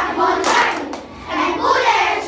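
A group of children chanting in unison in rhythmic phrases.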